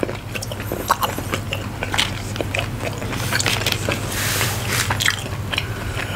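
Close-miked biting and chewing of teriyaki turkey jerky: many small wet clicks and crackles of the dried meat being worked in the mouth, with a brief hiss about four seconds in.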